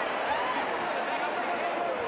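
Boxing arena crowd noise: a steady din of many voices, with one fainter voice rising briefly above it early on.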